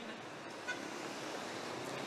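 Faint, steady road traffic noise, a hiss of passing cars.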